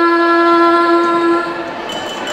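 A girl's voice singing one long held note through a microphone, the pitch steady, fading out shortly before the end.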